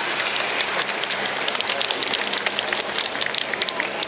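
Audience applauding: many hands clapping in an irregular patter that builds through the middle and thins out near the end.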